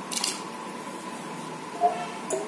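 A hand stirring cut tapioca pieces in a steel pot of water, with a brief splash and squish of water shortly after the start.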